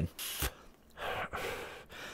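A short sharp breath in, then after a pause a long breathy exhale that slowly fades: someone drawing on a vape pod and blowing out the cloud of vapour.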